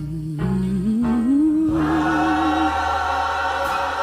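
Background music: a choir singing a slow gospel-style song, with a long held note that wavers in pitch. Fuller voices come in about halfway through.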